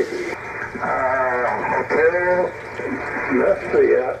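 Voice of another station received on single-sideband through the Icom IC-7300 transceiver's speaker: thin, band-limited speech with a warbling quality, in bursts about a second in and again near the end.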